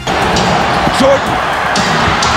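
Basketball game broadcast audio: a loud arena crowd with a commentator's voice over it and a ball bouncing on the court.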